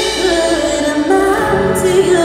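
Live worship song: a woman sings the lead melody, holding and sliding between notes over the band's accompaniment, with a low bass note coming in near the end.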